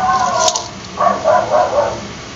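Two drawn-out calls from a domestic animal, each under a second long, with a short sharp click about half a second in.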